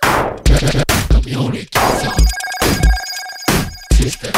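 Electronic music track with deep kick-drum thuds and sharp, noisy percussion hits. About halfway through, a rapidly pulsing, telephone-ring-like tone pattern comes in.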